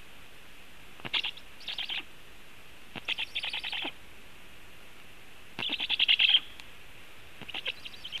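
Juvenile black storks on the nest calling in four short bursts of rapid, harsh pulsed notes. The third burst is the loudest.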